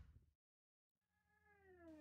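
Near silence, then in the second half a faint tone with overtones that slowly falls in pitch.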